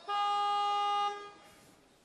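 A single electronic buzzer tone from the weightlifting competition clock, held steady for about a second and then fading out. It is the signal that 30 seconds remain for the lifter to start his attempt.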